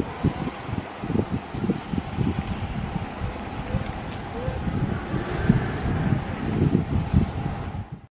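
Wind buffeting the microphone in uneven gusts, over the sound of cars driving past along the street.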